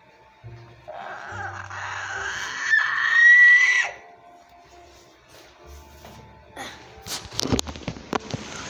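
A child's high-pitched screech, like a raptor call, lasting about three seconds and rising in pitch until it breaks off, over quiet background music. Near the end come knocks and rustling as the iPad is handled.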